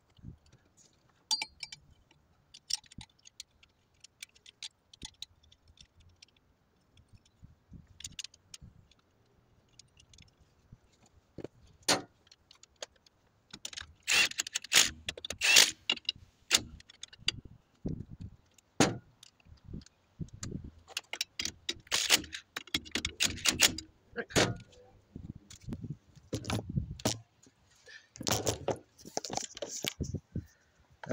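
Metal tools and parts clinking and clattering: scattered sharp clicks at first, then a dense run of metallic jangling and clanking from about halfway through, as hardware is handled while a truck's driveshaft is refitted.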